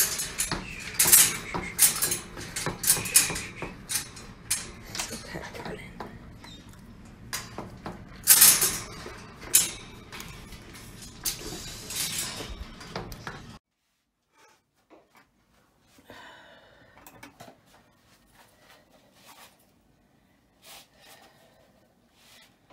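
A dog eating kibble hurriedly from a bowl clipped to the gate of a wire crate, with repeated clattering and rattling of the bowl and metal crate. The clatter stops abruptly about thirteen and a half seconds in, leaving only faint, scattered small sounds.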